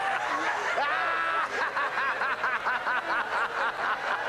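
A crowd of people laughing, many voices overlapping. Through the middle, one person's rhythmic "ha-ha-ha" laughter stands out, about four pulses a second.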